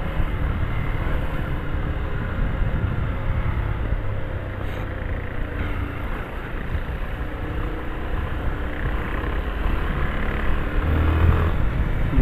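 Yamaha Fazer 250 motorcycle's single-cylinder four-stroke engine running as it rides through slow traffic, picking up speed near the end, with wind noise on the camera microphone.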